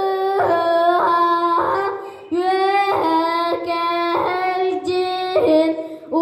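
A boy singing a Sakha toyuk (olonkho song) unaccompanied: long held chanted notes that scoop up at each new syllable, with a brief breath break about two seconds in.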